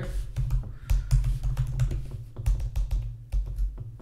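Computer keyboard typing: quick, irregular keystroke clicks as a search query is typed.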